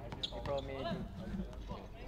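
Live sound of a pickup basketball game on an outdoor court: players' voices calling out faintly, with a few ball bounces.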